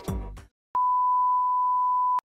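A music tail fades out, then after a brief gap a steady single-pitch electronic beep, like a 1 kHz test-tone bleep, sounds for about a second and a half and cuts off abruptly.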